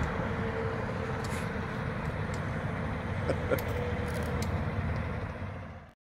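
Steady outdoor rumble of vehicle traffic and engines across a large open parking lot, with a few faint ticks, fading out near the end.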